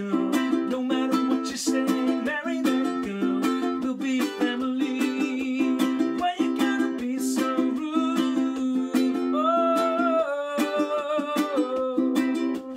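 Solo ukulele strummed steadily through chords in a reggae rhythm, in a small room. Near the end a single held, wordless sung note rises over the strumming.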